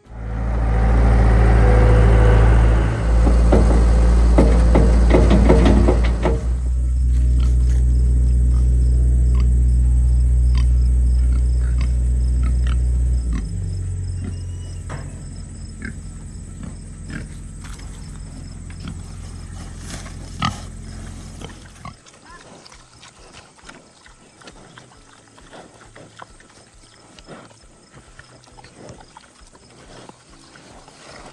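Pigs eating corn husks: chewing, crunching and rustling in the leaves as many small clicks, with a low drone over the first two-thirds that fades out.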